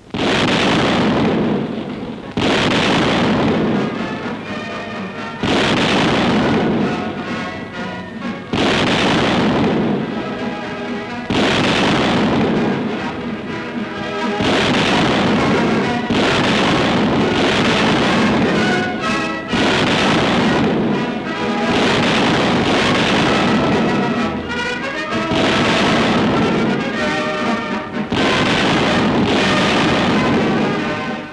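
Heavy anti-aircraft guns firing about every three seconds, each shot a sudden blast that dies away, under newsreel music.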